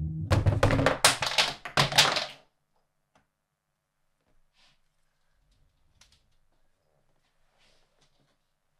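Makeup products and a phone falling and clattering onto the floor: a rapid, loud jumble of knocks and thunks for about two and a half seconds, then only a few faint knocks.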